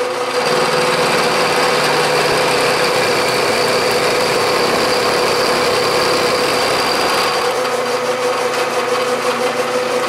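Bridgeport vertical milling machine running, its end mill cutting a step along a metal block held in the vise, over a steady spindle hum. The cutting noise sets in about half a second in and eases off near the end as the pass finishes.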